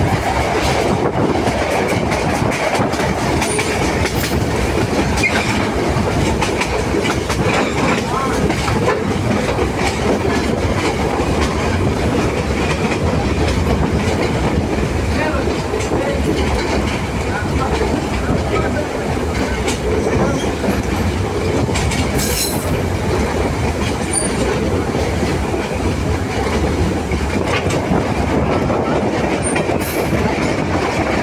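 Diesel passenger train running on the line, heard from an open carriage window: a loud, steady rumble of wheels on rail with wind noise, irregular clicks over rail joints, and a thin, high, steady whine throughout.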